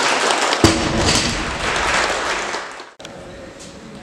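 A heavy thud about half a second in, from a loaded barbell with bumper plates hitting the wooden floor, over hall noise and voices. The sound cuts off abruptly about three seconds in and gives way to quieter room noise.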